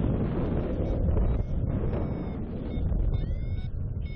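Airflow buffeting the microphone of a paraglider pilot's camera in flight: a steady, rough rush of wind noise.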